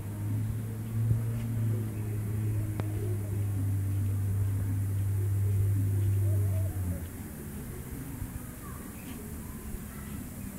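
A steady low motor hum that cuts off sharply about seven seconds in, with a few faint bird chirps.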